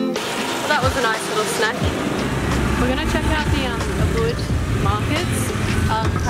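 Busy street ambience: traffic running past, with a low engine rumble that sets in about two seconds in, and people's voices over it.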